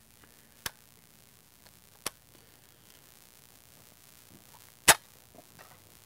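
Three sharp metallic clicks from a Hotchkiss M1914 machine gun's feed as a cartridge feed strip is worked into it: one under a second in, one about two seconds in, and a louder one near the end.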